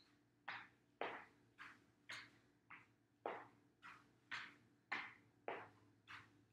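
Chair step-ups: sneakered feet stepping up onto a padded chair seat and back down to the floor, a steady run of soft thumps about two a second.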